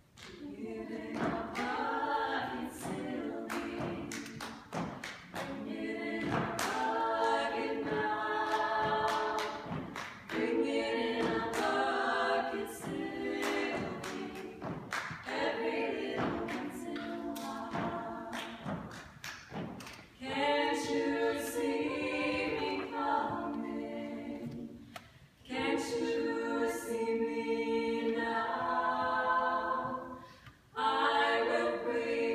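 Four female voices singing a cappella in close harmony, phrase after phrase, with rhythmic body-percussion hits (hand claps and slaps) keeping the beat under the singing.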